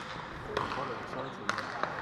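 Indoor hockey play in a sports hall: a few sharp clicks of sticks striking the ball on the wooden floor, two of them about a second and a half in, over a steady background of players' and spectators' voices.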